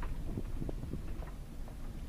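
Car driving slowly over a rough sandy dirt track, heard from inside the cabin: a steady low rumble with scattered light knocks and rattles as the car rides the bumps.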